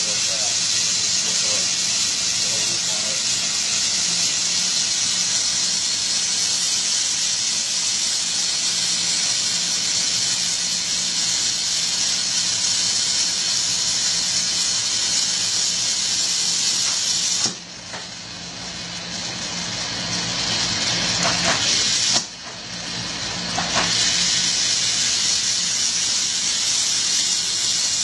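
Glassworking bench torch flame hissing steadily and loudly. Twice, about two thirds of the way through and again some five seconds later, the hiss drops suddenly and then builds back up over a few seconds.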